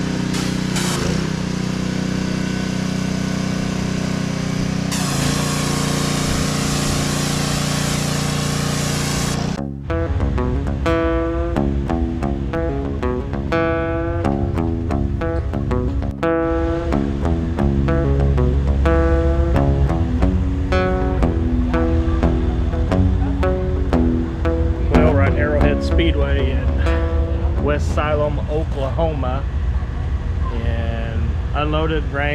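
For the first ten seconds a steady motor drone, joined by a loud hiss about five seconds in; both cut off suddenly. Then background music, a guitar-led song over a steady bass beat, fills the rest.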